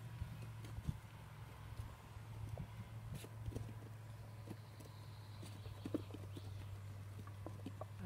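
A litter of nearly eight-week-old puppies eating from stainless steel bowls: irregular small clicks, knocks and crunches of muzzles and teeth against food and metal, over a steady low hum.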